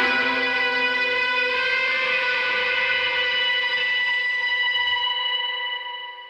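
The final guitar chord of a rock song, left ringing with effects after the band stops and slowly dying away. It fades out near the end.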